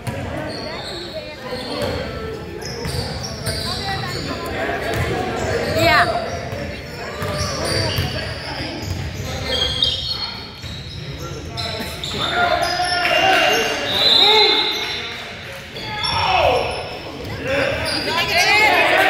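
A basketball bouncing on a hardwood gym floor, with sneakers squeaking sharply a couple of times, echoing in a large gymnasium, over people talking.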